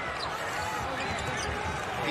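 A basketball being dribbled on a hardwood court, repeated bounces under voices.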